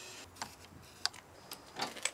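A few separate light clicks over a faint background, after a steady high hiss stops just after the start.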